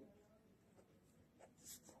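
Near silence, with the faint scratching of a pen writing on paper and a few short strokes near the end.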